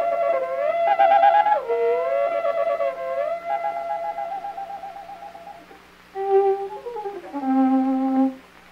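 Solo violin playing a 20th-century caprice from an old vinyl record. The pitch slides up and down between notes, with fast trills, a short break about six seconds in, then lower notes stepping downward.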